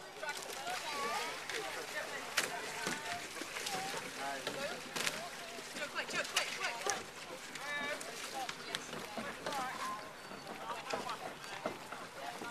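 Faint, scattered chatter of spectators' voices with occasional light knocks and clicks.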